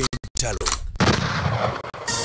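An explosion-like sound effect: a sudden, loud blast of noise about a second in that dies away over most of a second, led in by a softer rush with a sharp crack.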